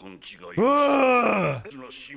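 A man's voice: short syllables, then one loud drawn-out vocal sound starting about half a second in whose pitch rises slightly and then falls.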